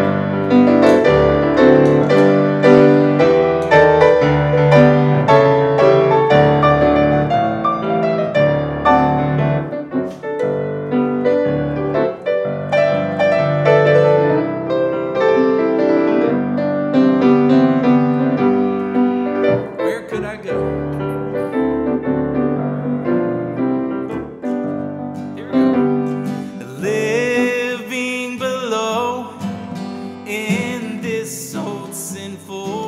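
Grand piano played solo, a lively passage of many quick notes and chords. Near the end an acoustic guitar joins in.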